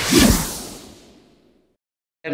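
A whoosh transition sound effect, swelling just after the start and fading out about a second and a half in.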